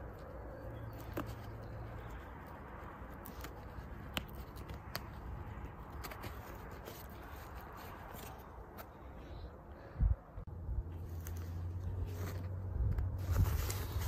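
Faint rustling and small clicks of a fabric stem bag and its strap being handled and fitted to bicycle handlebars. About ten seconds in there is a thump, followed by a low rumble.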